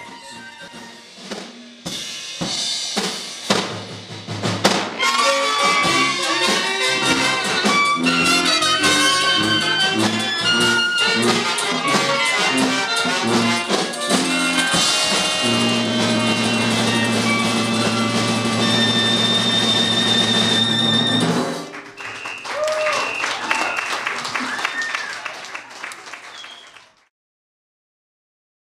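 Traditional Dixieland jazz band of cornet, clarinet, trombone, tuba, banjo, piano and drums playing a lively ensemble finish in old-time style, ending on a long held chord that stops about 21 seconds in. A quieter stretch with sliding pitches follows before the sound cuts off.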